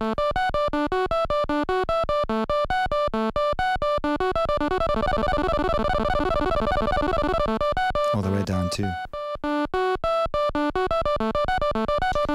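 Groovesizer's 8-bit granular synth (Auduino engine) playing a fast 16-step sequence of short, buzzy repeated notes while its tempo knob is turned. The notes come faster through the middle and slow again near the end.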